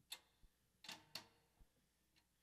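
Near silence with a few faint, sharp clicks or taps, four in all, irregularly spaced.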